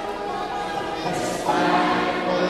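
A group of voices singing in held, choir-like notes. The chord changes and grows louder about one and a half seconds in.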